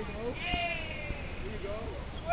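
A person's voice calling out in a long, drawn-out high shout about half a second in, over the background of an outdoor training session.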